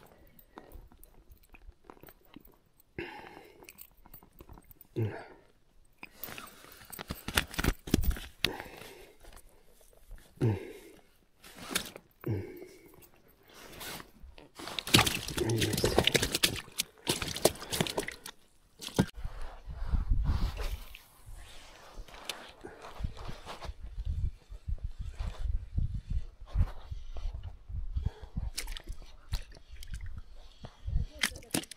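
Irregular close-up handling noise: rustling of clothing and gear with scrapes and knocks from hands working about an inflatable boat. The loudest stretch comes about halfway through.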